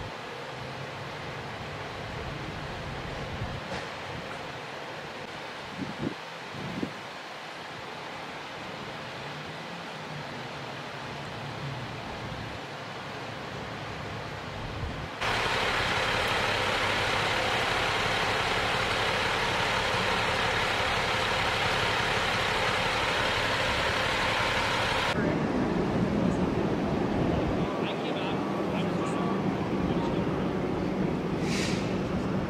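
Steady outdoor vehicle noise in three stretches that change abruptly. First comes a moderate hum, then about ten seconds of much louder, steady noise from a fire engine running close by, then a lower engine rumble with indistinct voices near the end.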